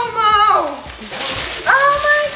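Two drawn-out, wordless vocal sounds. The first slides down in pitch at its end; the second comes in near the end and holds a steady pitch. Between them is a brief crinkle of plastic gift wrapping being torn open.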